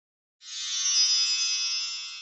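Short musical sting for a channel logo: a high, shimmering cluster of held tones that swells in after a moment of silence, peaks, then slowly fades.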